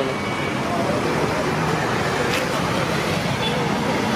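Steady road traffic noise, with people talking faintly in the background.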